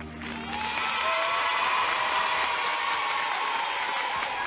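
A studio audience of children applauding, with some voices cheering; the clapping swells in within the first half-second as the song's last note dies away and then holds steady.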